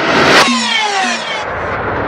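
Edited transition sound effect for a title card: a whoosh that swells to a peak less than half a second in, then falls away in several descending tones.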